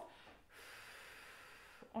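A faint, steady exhale with no voice: air blown out of the mouth in an even stream, showing the fast-flowing air that must keep going before any singing is added. It starts about half a second in and stops just before the end.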